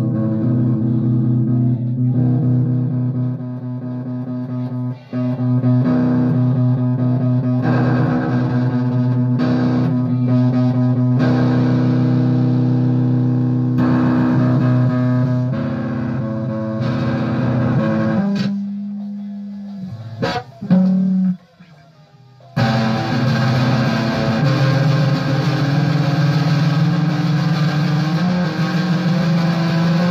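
Guitar jam with long held notes and chords. About three quarters of the way through it thins out and nearly stops, then comes back louder and brighter.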